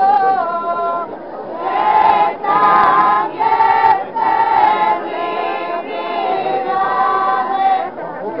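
Unaccompanied folk group singing, mostly women's voices, in short phrases of long-held notes with brief breaks for breath between them.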